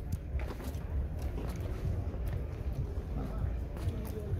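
Faint background voices over a steady low rumble, with a few light knocks.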